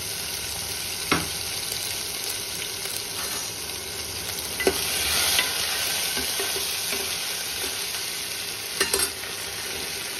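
Whole spices, dried red chillies, green chillies and ginger sizzling in hot oil in a kadai for a sambhar tempering. A steel ladle stirs them and clinks against the pan a few times.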